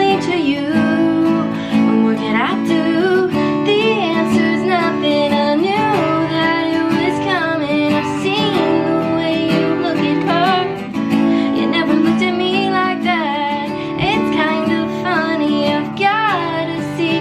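A woman singing solo to her own strummed acoustic guitar. The held sung notes waver with vibrato.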